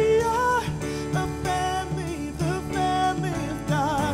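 Live worship band playing: a woman's voice sings a held melody with vibrato over keyboard, guitar and drums.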